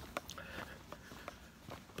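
A hiker's footsteps on a dirt-and-rock trail: a few soft, irregular steps and ticks.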